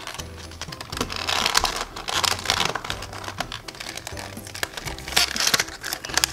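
Plastic toy packaging crinkling and crackling as it is pulled and torn open by hand without scissors, over background music with a steady repeating bass line.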